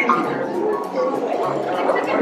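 Electronic warbling chirps from an R2-D2-style astromech droid replica, ending in a falling tone right at the start, over steady crowd chatter.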